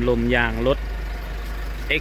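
A man speaks briefly, then a steady low hum goes on without words.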